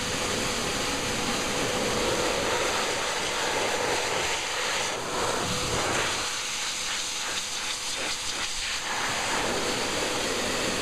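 Pet dryer blowing air through its hose nozzle onto a wet dog's coat: a steady rushing hiss, with a faint steady tone under it in the first half. From about six seconds in the air noise flutters unevenly.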